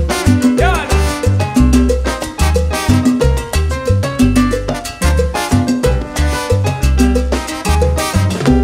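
Live salsa band playing an instrumental passage, with keyboard, upright bass and timbales and percussion in a steady dance rhythm.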